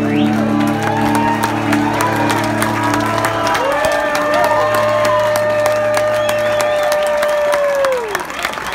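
A live band's final sustained chord on electric and acoustic guitars, with a long held final note coming in about halfway through and falling away near the end, under audience applause, cheers and whoops.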